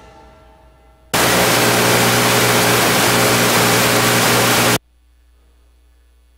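Countdown music dies away in the first second. Then a loud burst of static hiss with a mains hum runs for about three and a half seconds and cuts off suddenly, leaving a faint hum: a noise glitch in the audio feed.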